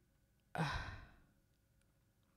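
A woman sighing once: a single breathy exhale about half a second in that fades away within half a second.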